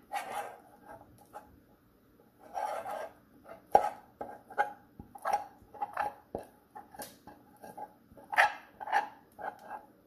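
Metal spoon scraping thick, sticky caramel mixture off the sides of a nonstick saucepan in irregular strokes, with a few sharp clicks of the spoon knocking against the pan.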